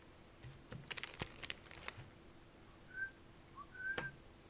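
Pokémon trading cards being handled and flicked through by hand, giving a quick cluster of sharp clicks and snaps about a second in. Near the end come three short, high whistle-like chirps.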